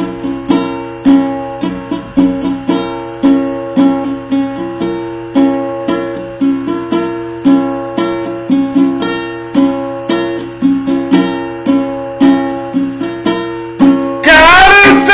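Solo ukulele played in a steady rhythm of strummed chords, about two a second, each chord ringing and fading before the next.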